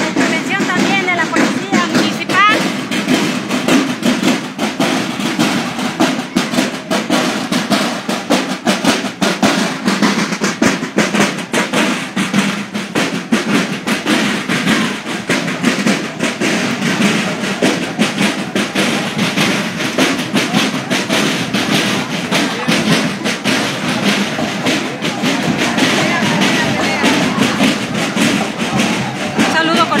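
Parade drums, snares and bass drum, playing a dense, unbroken marching beat, with crowd voices underneath.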